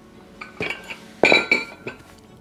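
Plate-loaded metal dumbbells clinking as they are set down on the floor after a set: a few light clinks, then a louder metallic clank about a second and a quarter in that rings on briefly.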